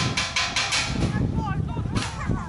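A person laughing in a quick run of short, breathy bursts during the first second, followed by fainter voices calling.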